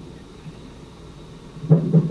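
Low steady room hum, then, about a second and a half in, a short loud burst of a person's wordless voice.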